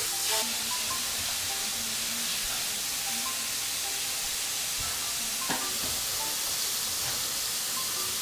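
Soft background music over a steady high hiss, with one faint click about five and a half seconds in.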